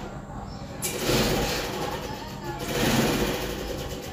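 Plastic zip-lock freezer bags rustling and crinkling as they are handled and pressed flat, in two stretches of rough noise, the first starting about a second in.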